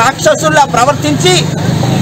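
A man speaking loudly in Telugu, with a motor vehicle's engine running steadily in the background.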